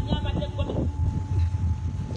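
A person talking, over a steady low rumble.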